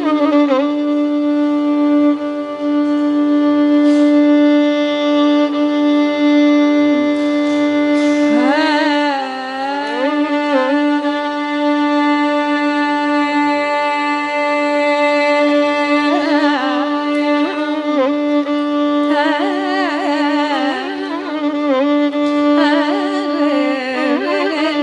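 Carnatic raga alapana in Keeravani: unmetered melodic phrases with wide ornamental glides, sung and answered on the violin, over a steady tanpura drone. The drone holds alone for a stretch, and the melody comes back in about eight seconds in and again through the second half.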